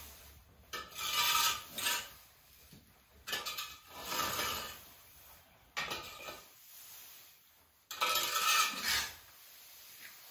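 A rake dragging and sweeping dry hay and lucerne across the floor, in four scraping strokes of about a second each with short pauses between.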